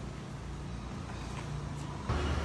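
Steady low rumble of a wooden oil press (chekku) running, its wooden pestle grinding sesame seeds in the stone mortar, with a couple of faint clicks in the second half.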